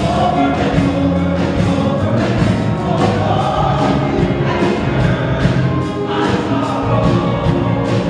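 Gospel choir singing an upbeat song live, many voices together over a band accompaniment with a steady percussion beat.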